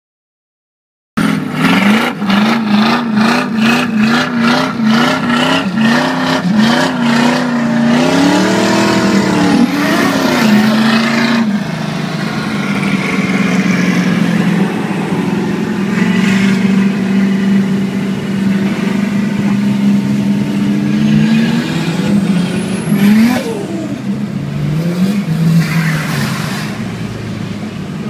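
Car engines revving and running, heard from inside a car's cabin. In the first several seconds the engine note rises and falls over and over in quick blips, then a few wider rev sweeps, then a steadier drone with occasional revs.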